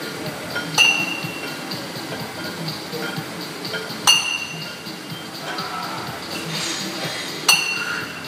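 Sharp metallic clinks of iron gym weights, three of them about three seconds apart, each with a short ringing tone. They fall in time with the repetitions of a dumbbell press.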